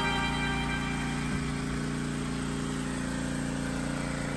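Background music: a soft held chord of sustained tones, slowly fading down.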